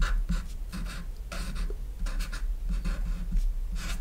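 Pen writing on paper: a quick run of short, irregular scratching strokes as handwritten characters are drawn.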